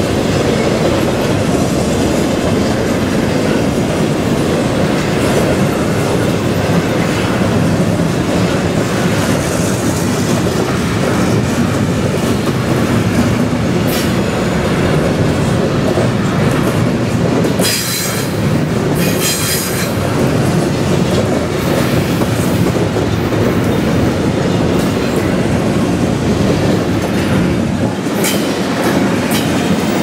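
Loaded double-stack intermodal freight cars roll past, the wheels making a steady, loud noise on the rails. Brief high squeals from the wheels cut in a few times past the middle and again near the end.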